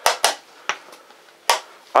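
Wooden chess pieces being set down hard on the board and the chess clock being hit in a fast blitz game: a handful of sharp clacks, two in quick succession at the start, then one about a second and a half in and another at the end.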